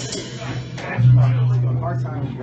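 Acoustic guitar at the close of a live song, with voices in the room. About a second in, a steady low hum comes in and holds.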